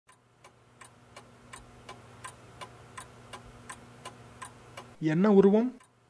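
Clock ticking steadily, about three faint ticks a second, over a low steady hum. A man's voice cuts in near the end.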